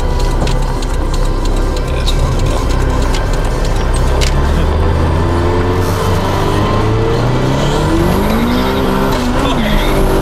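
Toyota MR2 Turbo's turbocharged four-cylinder engine heard from inside the cabin under hard acceleration. Its note climbs steadily in pitch for about seven seconds, then near the end the pitch swings up and down again as it pulls on.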